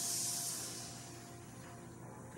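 Several people hissing through their teeth on a long, controlled exhalation as a breath-control exercise. The steady high hiss fades out within the first second, leaving quiet room tone.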